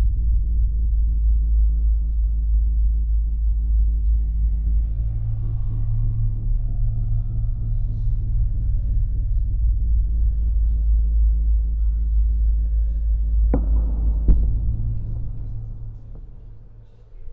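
A loud, steady deep rumble with faint music over it. Two sharp knocks come about three-quarters of the way through, and then it fades out near the end.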